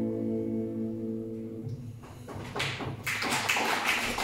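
A final held chord, played on accordion, fades out about a second and a half in. Then a few claps begin and grow into audience applause.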